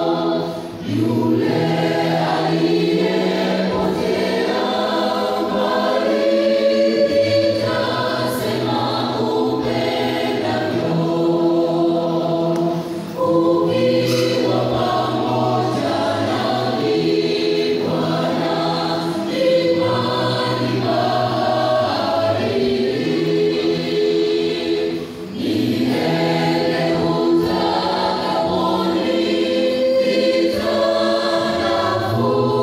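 Church choir singing a gospel hymn in parts, amplified through microphones and loudspeakers. The singing runs in long phrases with short breaks about a second in, near the middle and again near the end.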